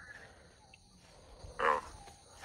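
A pause in a recorded phone call: faint line hiss, then a short spoken word from the other end about one and a half seconds in.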